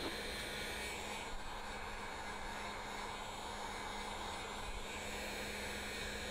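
Handheld heat gun running steadily, its fan blowing with a low, constant hum as it warms vinyl wrap film.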